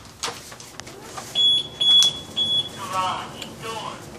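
Electronic beeper sounding three short, high-pitched beeps in quick succession.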